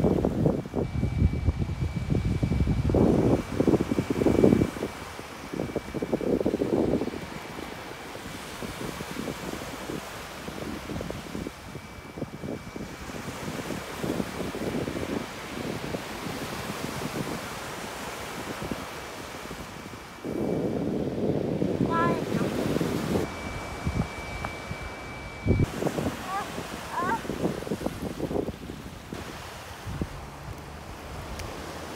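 Surf washing on a beach, with gusts of wind buffeting the microphone, strongest in the first few seconds and again about two-thirds of the way through.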